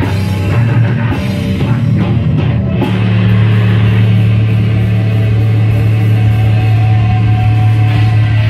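Heavy metal band playing live at full volume: distorted electric guitars, bass guitar and drum kit. About three seconds in, the busy playing settles into a steady, sustained low chord.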